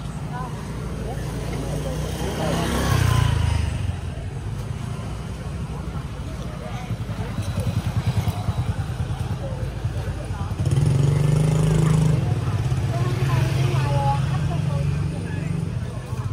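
Motorbike engines running in a busy street, with a low rumble that swells about three seconds in and again for several seconds past the middle, under faint background voices.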